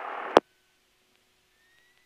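Steady hiss of the aircraft radio audio, cut off by a sharp click a fraction of a second in as the transmission ends, then near silence.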